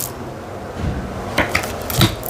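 Tarot cards being handled: a few soft rustles and a couple of short sharp clicks close together about one and a half seconds in, over a low steady room hum.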